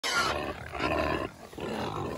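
A herd of pigs squealing and grunting noisily over one another, with a brief lull about a second and a half in.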